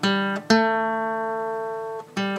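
Acoustic guitar music: a chord plucked at the start, then another about half a second in that is left to ring and slowly fade.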